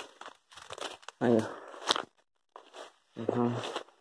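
Crackling and rustling of dry leaves and brush being pushed through on foot, mostly in the first second, between a man's short spoken interjections.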